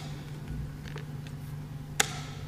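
Faint clicks of chess pieces being set down during a fast blitz game, with a sharp knock at the very end like a chess clock being struck, over a steady low room hum.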